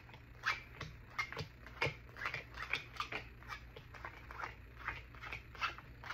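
Tarot cards being dealt face-down onto a table one after another: a quick, irregular run of light card slaps and flicks, two or three a second.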